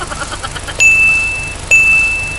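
Two identical high electronic dings, each held steady for about three-quarters of a second, the second following about a second after the first.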